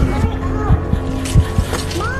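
Dramatic film score: a steady low drone with irregular deep thumps, like a pounding heartbeat, under voices calling out.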